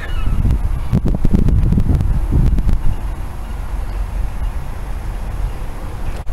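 Wind buffeting the camera's microphone outdoors: a loud, uneven low rumble, heaviest in the first few seconds.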